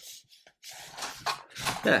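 Paper rustling and sliding as the pages of a stapled instruction booklet are folded back and pressed flat by hand, starting about half a second in.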